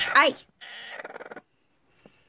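A woman's short cry of pain, "Ай!", as a broody hen sitting on her nest pecks her hand, followed by about a second of soft hissing noise.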